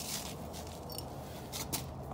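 Quiet steady background hum with a few faint clicks of something being handled.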